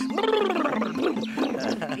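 A man making a drawn-out sputtering noise with his mouth, falling in pitch, to mimic the car dying as it broke down.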